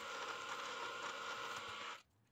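Drill press running steadily as a 7 mm twist bit cuts into a block of D2 tool steel: a low, even machine hum that cuts off suddenly at the end.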